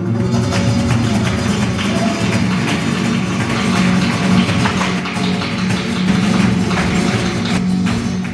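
Live flamenco ensemble playing: flamenco guitars with an acoustic bass underneath and quick, dense percussive strikes.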